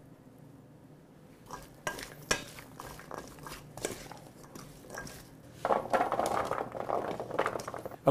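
A spoon stirring diced carrots, squash and onion in a stainless steel bowl to coat them in oil, with scattered clinks against the bowl. A steadier run of scraping and rustling follows in the last two seconds.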